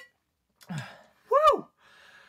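A man's sigh, then a short, loud, high-pitched "whoa" that rises and falls in pitch, trailing off into a breathy exhale.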